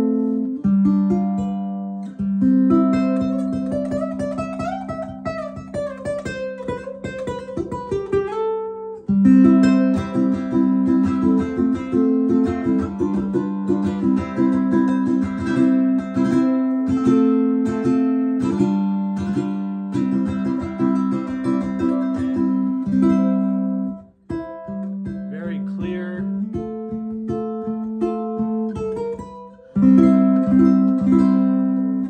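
Kala Revelator all-Korina electric tenor ukulele, strung with a wound low G, played through a Fishman Loudbox acoustic amp with rapid picked and strummed chords. A note glides up and back down about four seconds in. The playing breaks off briefly near 24 s in, then resumes.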